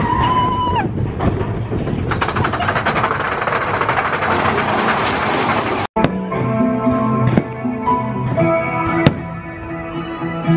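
Dense crowd noise with a brief gliding tone at the start, then an abrupt cut about six seconds in to background music with plucked guitar.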